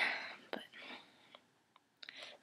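Speech only: a young woman's soft, breathy voice saying "But".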